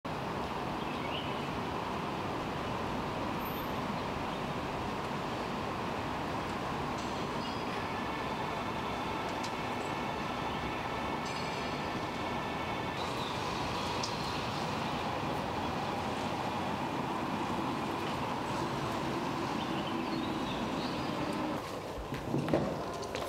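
A vehicle running with a steady rumble. A thin whine of several steady tones comes in from about 7 to 13 seconds.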